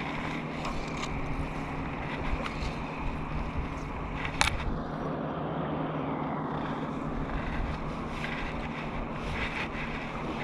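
Wind on the microphone over small waves lapping around a wading angler, with a steady low hum underneath. One sharp tap about four and a half seconds in.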